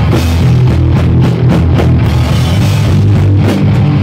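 Live hardcore punk band playing loud: distorted electric guitar, bass and drum kit, with the bass end heaviest.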